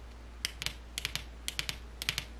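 Long fingernails tapping on tarot cards: light, sharp clicks in quick groups of three, about twice a second, starting about half a second in.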